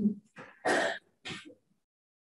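A person clearing their throat: three brief noisy bursts in the first second and a half, the middle one loudest.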